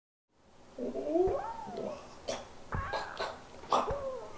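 Wordless cries that slide up and down in pitch, with several sharp knocks between them, fading in from silence.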